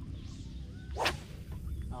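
An ultralight spinning rod swishing through the air in one quick cast stroke, a single sharp swish about a second in.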